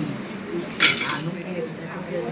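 A single sharp glassy clink of glass or crockery a little under a second in, over the murmur of diners' voices.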